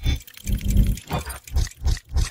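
Designed sound effects for an animated logo intro: a quick run of about five heavy, growling hits as metal gears lock together.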